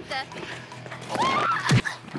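A short rising cry, then a sharp thud near the end as the padded sweeper boom strikes a contestant, over background music.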